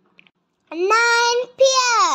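A child's high voice counting aloud in a sing-song way: two drawn-out number words, the first about two-thirds of a second in and the second just after it.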